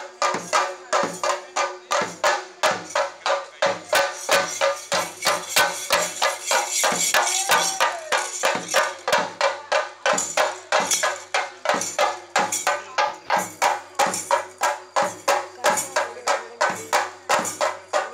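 Theyyam temple percussion: chenda drums with cymbals played in a fast, even beat of about three strokes a second, with a faint steady tone held underneath.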